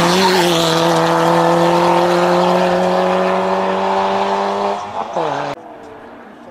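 Peugeot 206 rally car's engine held at high revs as it drives past, its pitch climbing slowly for nearly five seconds, then dropping sharply as the driver lifts off about five seconds in. The sound cuts off suddenly just after.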